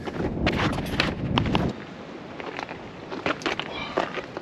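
Wind on the microphone and footsteps over seaweed-covered rocks, cut off suddenly about two seconds in and followed by a quieter stretch with scattered clicks and knocks.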